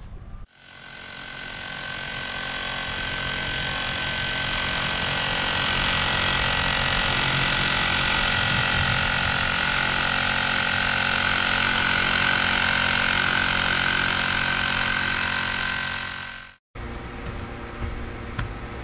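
Milwaukee M18 cordless SDS-Max rotary hammer with a ground-rod driver attachment hammering a 10-foot copper ground rod into the ground. It runs without a break for about sixteen seconds, building over the first few seconds, then stops abruptly near the end.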